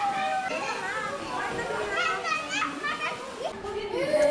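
Many children's voices chattering and calling out over one another, with some adult talk mixed in.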